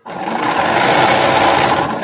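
Bernina sewing machine running fast, stitching patchwork squares together in one continuous run.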